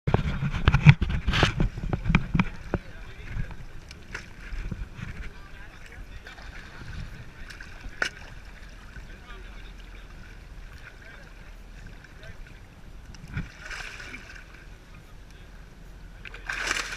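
Water splashing and sloshing as nurse sharks crowd and thrash at the surface beside a boat. It is loudest with knocks and bumps in the first few seconds, then settles to quieter lapping with one sharp click.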